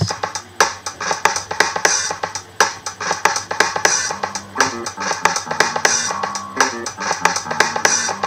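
Apple Loops playing back together in GarageBand: a drum kit loop with a steady beat, an electric bass loop and a funky electric guitar loop.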